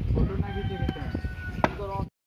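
A wooden stick striking at a snake on a concrete floor: two sharp knocks, about a second in and a louder one near the end.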